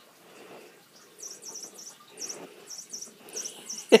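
Electronic chirping from a light-up cat wand toy: short high-pitched chirps in quick groups of two or three, repeating from about a second in. Soft rustling runs underneath.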